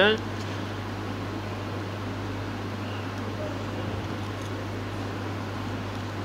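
Steady room noise: a constant low hum under an even hiss, with no distinct handling sounds.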